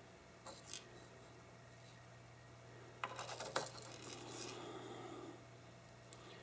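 Faint clicks of steel spoon and lead shot pellets against a cut-open shotgun shell and a nonstick frying pan as shot is spooned into the shell: a couple of clicks about half a second in, and a cluster around three seconds in. A low steady hum runs underneath.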